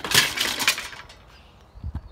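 Handling noise on a phone's microphone: a loud rustling scrape lasting under a second, then a couple of dull low thumps near the end.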